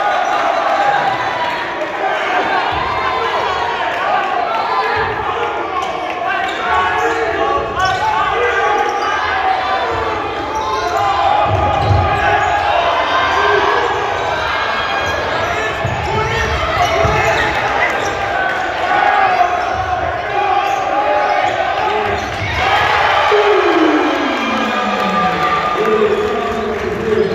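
A basketball dribbled on a hardwood gym floor during live play, low thuds under constant voices of players and spectators in a large hall. Near the end a voice slides down in pitch.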